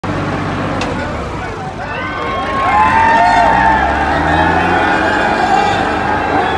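Two turbo diesel tractors, a Sonalika 60 RX and a Swaraj 855, running hard in a tractor tug-of-war, their engines a steady low drone, with a crowd shouting over them; it grows louder about three seconds in.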